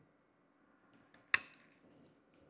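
A single sharp snap about a second and a half in, after a couple of faint ticks: pliers-style coral cutters biting through the rock base of a zoanthid frag.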